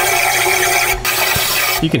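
Compressed air from an air hose hissing as it is blown through the engine's PCV breather passage. It breaks off briefly about a second in and stops near the end. The air getting through shows the passage is not clogged, so the oil pan need not come off.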